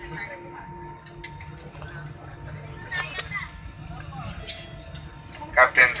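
Steady low hum of an airliner cabin as the plane moves on the ground after landing, with faint voices of passengers and a few light clicks. A loud cabin PA announcement resumes near the end.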